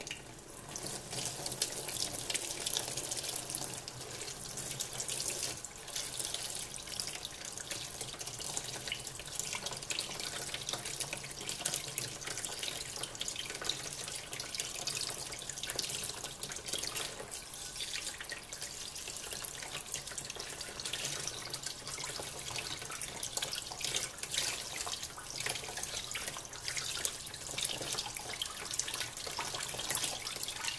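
Cold water running steadily from a kitchen faucet, splashing over an etched aluminum enclosure and into a plastic tub of rinse water, washing off ferric chloride etchant.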